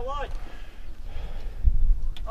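Wind buffeting the microphone: low rumbling gusts, strongest near the end, after a man's voice trails off at the start.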